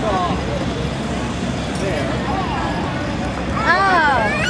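People's voices talking indistinctly outdoors over a steady low rumble. A louder high-pitched voice rises in near the end.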